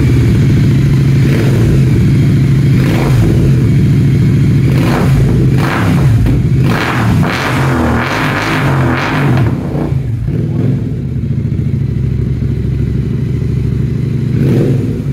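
Royal Enfield Continental GT 650's 648 cc parallel-twin engine running through newly fitted aftermarket Red Rooster silencers, blipped in a series of quick revs from about one to ten seconds in, then settling back to a steady idle.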